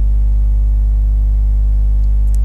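Steady electrical mains hum: a constant low buzz with a stack of overtones.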